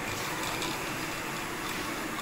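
Steady supermarket ambience: a continuous hum of the large store with faint small clicks and clatter over it.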